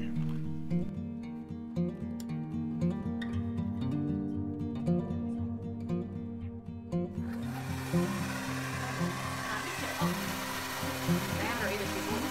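Soft background guitar music; about seven seconds in, a handheld hair dryer switches on and blows with a steady rushing hiss under the music, drying freshly brushed Mod Podge.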